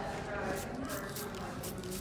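A hand-held spray bottle misting wet hair in several short hisses, over faint voices.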